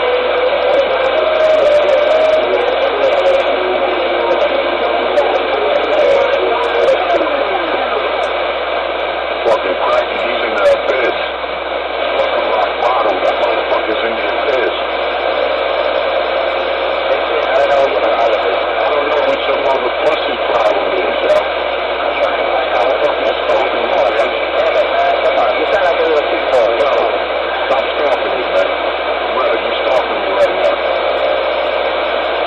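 Ranger CB radio receiving a busy channel through its speaker: steady static on thin, telephone-like audio, with unintelligible voices and steady whistling tones over it.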